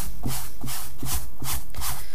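Palms rubbing a fabric square down onto a Mod Podge-coated stretched canvas, sweeping over the cloth in quick repeated strokes, several a second.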